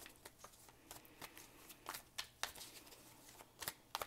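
Green Witch Tarot deck being shuffled by hand: a soft, irregular run of card clicks and rustles, with a few sharper snaps about two seconds in and near the end as a card is pulled from the deck.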